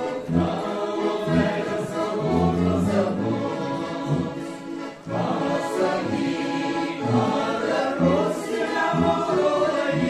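Mixed men's and women's vocal ensemble singing a song in harmony, with a piano accordion accompanying; there is a short pause between phrases about five seconds in.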